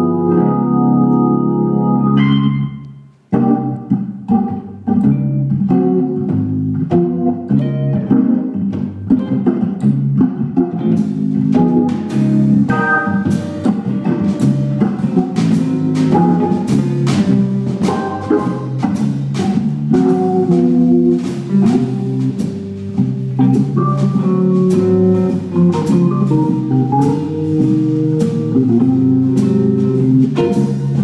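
Hammond organ playing a jazz tune. A held chord breaks off about three seconds in, then the organ plays on, with a drum kit's cymbals joining from about eleven seconds.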